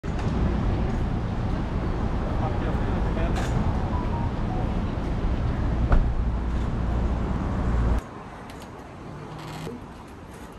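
Street noise with road traffic, a heavy low rumble under it. About eight seconds in it cuts suddenly to a much quieter room tone.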